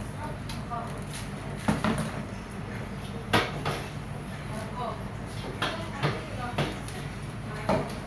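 Broom and dustpan knocking and scraping on a ceramic tile floor during sweeping: about six sharp knocks, the loudest a little over three seconds in, over a steady low hum.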